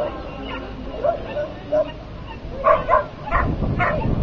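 A dog barking in repeated short, high yips, about two a second, getting louder near the end, as dogs do when excited during an agility run. A low rumble comes in about three seconds in.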